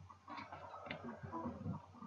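A few faint small clicks or ticks over quiet room tone.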